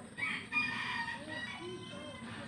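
A rooster crowing once: one drawn-out high call lasting about a second and a half.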